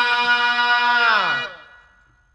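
A single sustained instrumental note from a birha accompaniment, held steady, then sliding down in pitch and dying away about a second and a half in.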